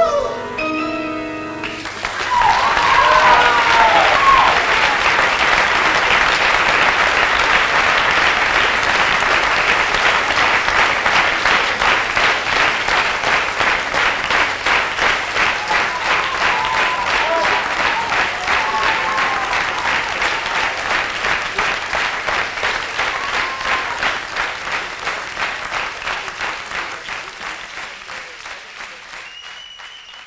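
A sung held note breaks off about a second and a half in, and a theatre audience bursts into loud applause with cheering. The clapping settles into a rhythmic beat of about two claps a second and fades out near the end.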